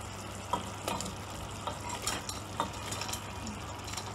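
Fried chicken pieces tipped from a bowl into a hot steel pot of sautéed peppers and onions. There is a soft, steady sizzle, with a few light knocks and clicks as the pieces land and shift.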